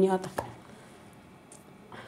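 A pause in a woman's speech: her last word ends, a single short click follows, then low, quiet room tone.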